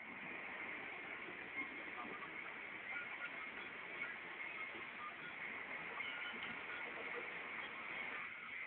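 Steady engine and road noise from inside a moving bus, heard through a low-quality phone microphone.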